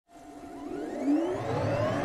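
Synthesized rising sweep for an animated intro: several tones glide upward together over a steady held tone, fading in from silence and growing louder throughout.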